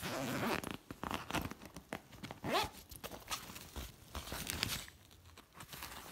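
Backpack zipper being pulled in several short runs, with fabric rustling as the compartment is opened; the loudest run, about two and a half seconds in, rises in pitch.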